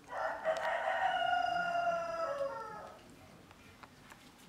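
A rooster crowing once: a single long crow of about three seconds that drops in pitch at the end.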